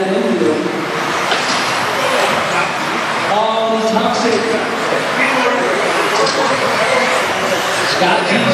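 Race announcer's voice over a PA in an echoing hall, with electric 2WD modified RC buggies running on a carpet track beneath it.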